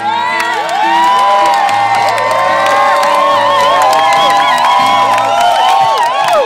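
A crowd cheering and whooping, many voices shouting at once, over a live band's low held notes.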